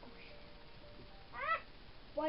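A single short meow-like call, rising then falling in pitch, about a second and a half in.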